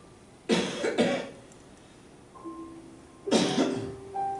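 A person coughing: two coughs in quick succession about half a second in, then a third near the end, over faint, soft held musical notes.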